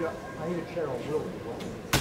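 Voices calling out during an indoor soccer game, with one sharp thump just before the end, like a ball being kicked.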